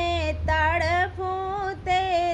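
A woman singing a Hindi devi geet, a devotional song to the Mother Goddess, solo with no instruments, drawing out long notes that waver and bend in pitch.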